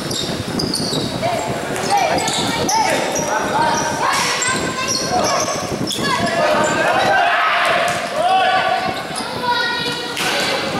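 Basketball bouncing on a gym court during play, with players and onlookers shouting in an echoing hall.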